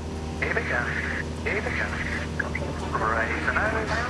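Single-engine light aircraft's engine droning steadily in the cockpit, power back on after a practice stall, under a man's voice over the headset intercom.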